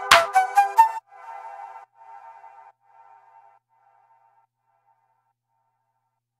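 Background music with drums and pitched notes that stops abruptly about a second in. Its last notes repeat several times as a fading echo for a couple of seconds, then silence.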